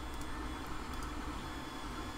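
Steady faint background hiss of room tone, with no distinct events.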